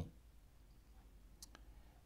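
Near silence in a pause in speech, with two faint, short clicks close together about a second and a half in.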